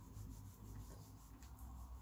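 Faint rubbing of hands against the fabric of a shirt on someone's back.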